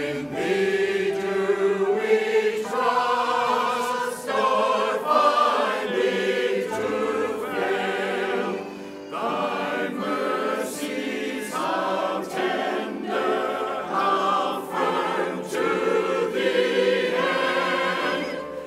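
Mixed church choir of men's and women's voices singing a hymn together, in phrases with brief breaths between them.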